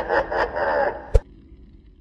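Logo intro sting: a few pulsing sound-effect beats, then a single sharp hit a little over a second in, then a faint low hum that fades out.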